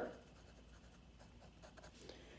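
Faint pen strokes writing on lined notebook paper, with a few light scratches of the tip near the end.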